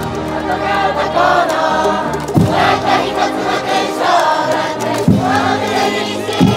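A high-school baseball cheering section in full song: a brass band plays a cheer tune while the massed students sing along, and a heavy drum beat lands twice, a few seconds apart.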